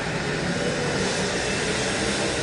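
Steady background noise: a constant rush with a faint low hum and no distinct events.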